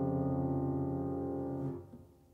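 A soft piano chord left to ring and slowly die away, the close of a piano piece. It stops suddenly just before the end.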